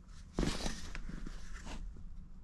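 Handling noise as a bullpup shotgun is turned over on a padded fabric gun bag: a short rustling scrape about half a second in, then a few faint clicks.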